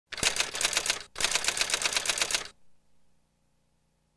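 A rapid clatter of sharp clicks, about ten a second, in two runs of about a second each, like fast typing. A faint low hum follows.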